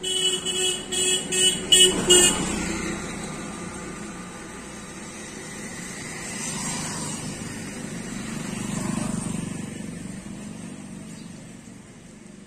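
A vehicle horn sounding a quick run of about six short toots over the first two seconds, followed by road traffic noise that swells twice as vehicles pass.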